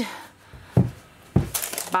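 Two dull knocks about half a second apart: a gloved hand tapping a freshly unmoulded cold process soap log, showing it has set solid, with faint crinkling of its paper liner.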